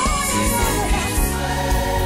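Gospel choir singing, a lead voice holding a wavering vibrato note that ends just after the start.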